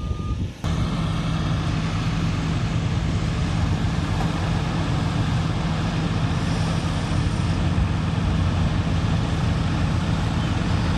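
Truck-mounted forklift's engine running steadily with a low hum while it unloads lumber from a delivery flatbed. A single backup-alarm beep sounds in the first half second.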